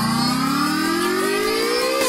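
Build-up in a UK bounce dance track: a synth sweep rising steadily in pitch, with the beat dropped out.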